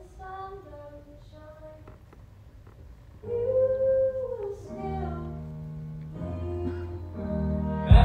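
Live musical theatre song: singing with accompaniment, soft for the first three seconds, then louder from about three seconds in with held notes over a low bass line.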